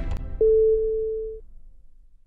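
Background music ending on a single held, pure-sounding note that starts suddenly about half a second in, holds for about a second and then fades away.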